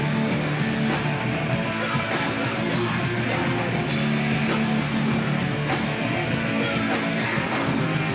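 Live hardcore rock band playing loud: distorted electric guitar, electric bass and drum kit together.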